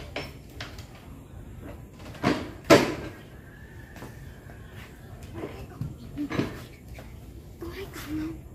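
A stacked pair of speaker cabinets on a metal stand being set down on a tiled floor: two heavy knocks close together about two and a half seconds in, with a few lighter knocks and bumps around them.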